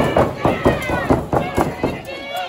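Wrestler's boots stomping on a downed opponent and the ring canvas in a rapid run of thuds, several a second, with voices shouting over them.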